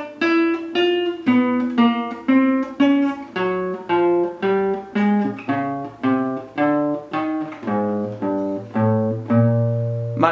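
Classical guitar playing a single-note left-hand finger exercise in the 2-1-3-4 fingering, one plucked note at a time at an even pace of about two and a half notes a second, moving from string to string.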